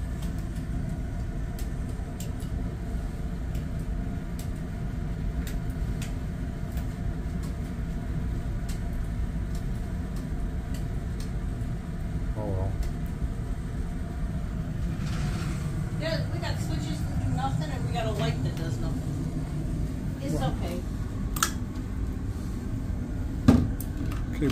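Steady low hum and rumble of a cruise ship cabin's air handling, with faint, quiet voices now and then and a sharp click near the end.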